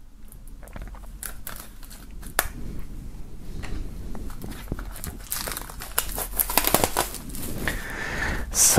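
Plastic shrink-wrap film on a CD digipak being slit with a knife and peeled off, a run of crinkling and crackling that gets busier in the second half as the film is pulled away.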